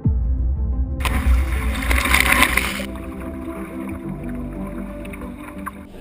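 Background music with rough-sea sound under it: a low rumble, and a loud rush of breaking waves from about one to three seconds in.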